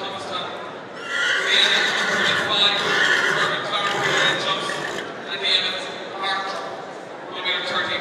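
Horse whinnying loudly several times. The longest call runs from about a second in to about five seconds, and shorter calls follow near the middle and the end.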